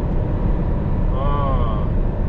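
Steady low rumble of a heavy truck's engine and tyres heard inside its cab at expressway speed. A short, drawn-out vocal hum rises and falls a little past a second in.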